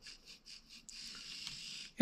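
Small LEGO Spike Essential angular motor whirring faintly as it drives the garbage truck's bin-lifting arm through its plastic gears. It runs in a few short spurts, then runs steadily from about a second in until just before the end.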